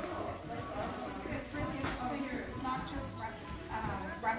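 A woman talking, her words unclear, with background music underneath.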